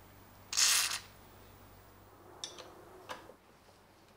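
A half-second hiss of aerosol penetrating oil sprayed through its red straw into a rusted pin hole, followed by a couple of short, light clicks.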